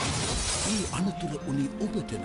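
Glass shattering in a vehicle crash, a dense burst of noise loudest in the first second, with a voice and music running under it.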